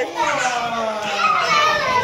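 Young children's voices crying out and squealing in play, one long drawn-out cry sliding slowly down in pitch.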